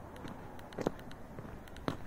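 Quiet footsteps on a tarmac driveway: a few light clicks and scuffs over faint outdoor background.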